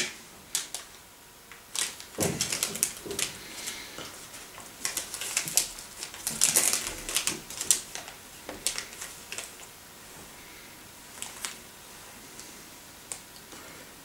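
Plastic candy wrapper crinkling and crackling as it is handled and peeled open by hand, in irregular bursts that are busiest in the first half and thin out to a few clicks later.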